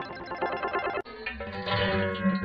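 Music: one logo jingle trails off, then cuts abruptly about a second in and a new tune begins.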